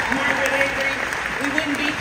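Large audience applauding in a big hall, a dense stretch of clapping, with voices talking over it.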